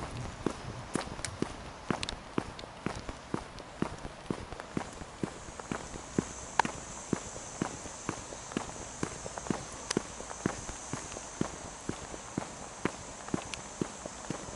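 Footsteps on an asphalt path at a steady walking pace, about two steps a second.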